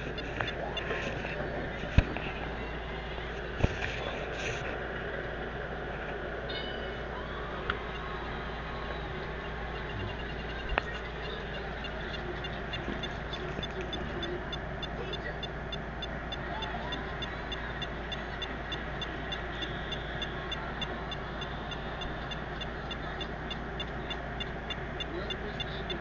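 Handheld EMF meter beeping: short high pips about three times a second, starting about halfway through, over steady hiss and low hum, with a few handling knocks early on. The meter is showing a 'High' reading.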